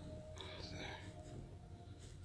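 Quiet pause with a faint, indistinct voice about half a second in, over a low steady hum.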